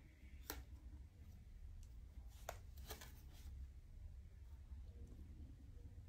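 Near silence with a handful of faint, sharp clicks and taps, mostly in the first half, as a plastic ruler and marker are handled against the fabric on the table. A low steady hum sits underneath.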